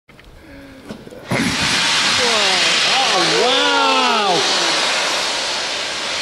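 Steam locomotive 60103 Flying Scotsman starts a loud, steady hiss of escaping steam about a second in, from steam venting at its cylinders as it readies to move off.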